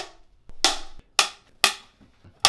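Wooden film clapperboard sticks snapping shut, three sharp claps about half a second apart, slating takes to sync picture and sound.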